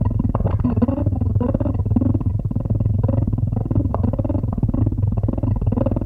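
Nine-string electric 'Future Lute' played loud through an amp into an Ampeg 8x10 cabinet: a steady low note under wavering, bending higher notes, with a fast fluttering texture throughout.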